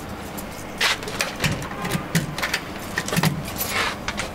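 Keys jangling and clicking in a door's deadbolt as it is locked: a run of sharp metallic clicks and rattles in several clusters, over a steady low hum.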